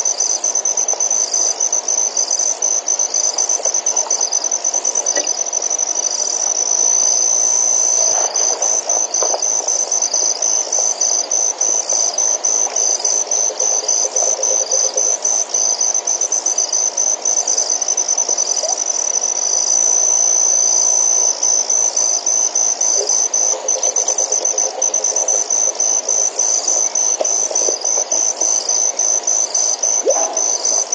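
A loud, continuous high-pitched trill of night insects, pulsing a few times a second without a break, with fainter, lower sounds underneath.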